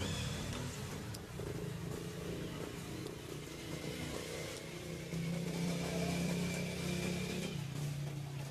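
A small engine running steadily, its hum growing louder about five seconds in.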